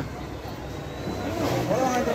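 A bus engine running as the bus drives off, its sound fading into a faint low hum, with a faint voice near the end.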